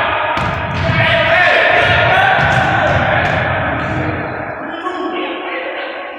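Basketball bouncing and thudding on a hardwood gym floor, under players' distant voices, all echoing in a large gym hall.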